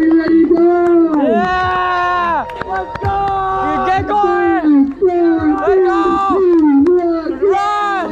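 A voice close to the microphone letting out a run of long, drawn-out yells, each held and then falling away, with a crowd chattering behind.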